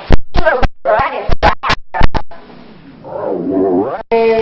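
Garbled audio from a worn or edited videotape: short fragments of voice and music chopped apart by a rapid series of sharp clicks, then a wavering, voice-like tone near the end.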